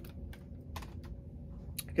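A few light plastic clicks and taps of a CD jewel case being handled and set down, over a faint steady low hum.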